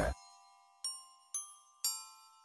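Soft background music: three bell-like chime notes struck about half a second apart, each ringing out and fading.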